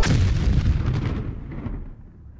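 Explosion sound effect: a sudden boom as the rap music cuts off, then a low rumble that fades away over about two seconds.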